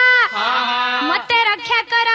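A singer's voice holding long, high sung notes that slide in pitch at their ends, in the drawn-out melismatic style of Odia Pala devotional narrative singing.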